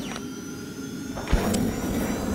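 Whoosh sound effect of an animated logo sting, swelling with steady ringing tones, with a sharp low thump just over a second in and a brief rising glide after it.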